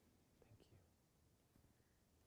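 Near silence: room tone with a faint whisper or murmur of voices in the first second.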